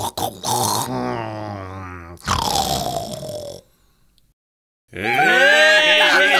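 A man's voice acting out exaggerated snoring: two long, drawn-out snores, the second falling in pitch. After a short pause, music starts near the end.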